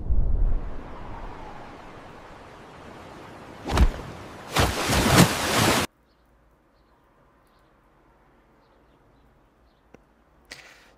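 AI-generated soundtrack of a cliff dive: wind and sea noise, then a sharp splash about four seconds in followed by a longer rush of water. The sound cuts off suddenly near six seconds, leaving near silence.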